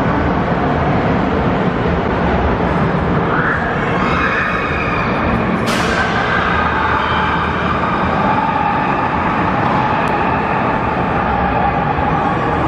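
Roller coaster trains running on steel track with a steady low rumble, set in the loud, echoing din of an indoor amusement park hall. From about four seconds in, long high tones ride over it, and there is a sharp hiss near six seconds.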